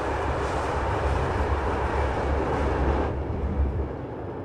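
Steady low rumble and running noise of a moving passenger train, heard from inside the carriage; the hiss above it thins out about three seconds in.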